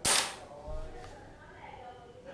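A single short, sharp snap at the very start, followed by faint handling sounds.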